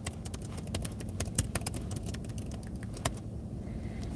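Irregular clicking of laptop keys, a quick run in the first second and a half and then a few scattered clicks, over a steady low rumble inside a parked car.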